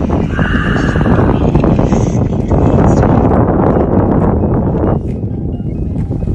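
Moving motorboat at sea heard through a phone's microphone: a loud, steady rumble of wind, engine and water noise, easing slightly about five seconds in. A brief higher squeal-like sound rises over it about half a second in.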